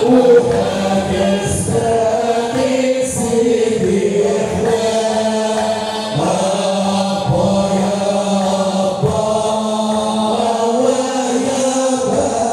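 Hamadsha Sufi brotherhood chanting a devotional hymn: a group of men's voices singing together in a wavering melody over a steady low tone.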